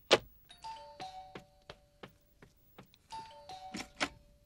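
A telephone receiver is set down with a sharp clack, the loudest sound. A doorbell chime then rings twice, about two and a half seconds apart, each time three notes stepping down in pitch, with a string of sharp taps in between.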